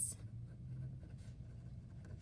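Pen scratching faintly on workbook paper as words are handwritten, over a low steady hum.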